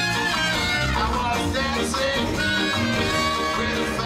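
Live ska band playing an instrumental passage: trumpet and saxophones play a horn line over electric bass and drums.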